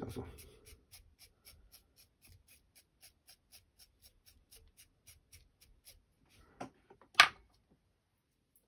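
A toothbrush brushing out the CDC and dubbing fibres of a shrimp fly held in a vise: light scratchy strokes, about three a second. Near the end come two sharp knocks, the second the loudest sound.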